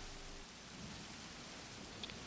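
Faint, steady rain from a film's soundtrack.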